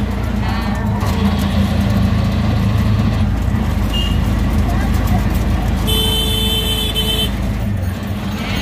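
Auto-rickshaw engine running steadily, heard from inside the passenger cabin in road traffic. A vehicle horn sounds for just over a second about six seconds in.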